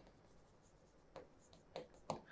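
Faint scratching of a pen writing on a board, a few light strokes about a second in and near the end, otherwise near silence.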